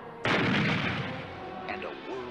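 A sudden loud blast about a quarter second in, a cartoon sound effect that fades away over about a second.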